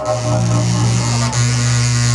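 A live noise band plays a loud, steady, distorted low buzzing drone. A hiss of high noise joins about a second and a half in.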